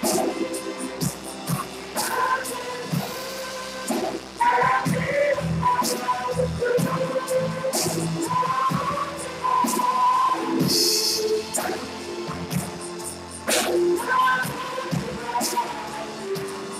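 Live worship band playing a song: a woman sings the lead through a microphone over a drum kit, with frequent sharp drum and cymbal strikes.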